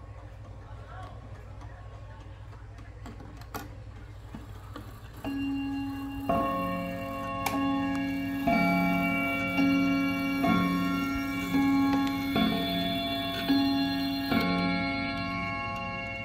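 Wuba mini mantel clock with a Schatz movement striking bim-bam on its gongs. About five seconds in, ten ringing strikes begin, about one a second, alternating between a higher and a lower note, each still ringing when the next sounds. A single click comes shortly before the first strike.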